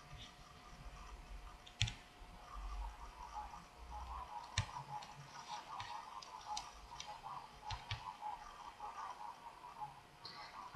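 Faint, irregular clicks of a computer mouse and keyboard in use, a few spaced seconds apart, over a faint steady hum.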